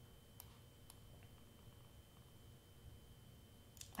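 Near silence: room tone with a faint steady high-pitched whine and two faint computer mouse clicks, about half a second and a second in.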